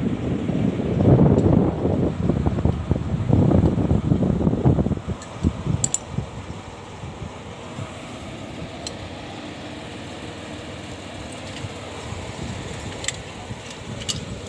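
Wind buffeting the microphone as a loud, gusty rumble for about five seconds, then dropping to a quieter steady rumble with a few faint clicks.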